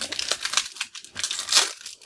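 Foil trading-card pack wrapper being torn open by hand: crinkling and ripping, loudest about one and a half seconds in. The wrapper tears apart in one go.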